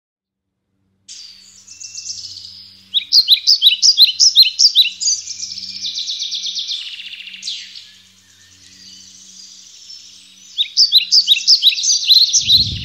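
Bald eagle calling: runs of rapid, high chirping notes, each sliding down in pitch, about five a second. The runs are loudest about three seconds in and again near the end, with a quieter stretch between.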